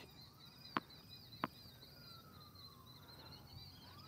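A tennis ball bounced twice on a hard court before a serve: two sharp taps about two-thirds of a second apart. Behind them a distant siren wails slowly down and then up. A quick series of high chirps keeps going throughout.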